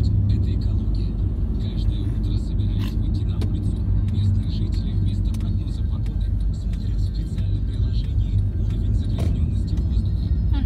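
Car engine and road noise heard inside the cabin while driving slowly: a steady low rumble with a few faint clicks.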